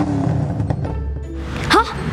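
A vehicle engine rumbling, heard over background music.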